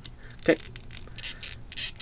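Small plastic action-figure parts rubbing and scraping together as a glove hand is pushed onto its peg, a few quick scratchy scrapes in the second half.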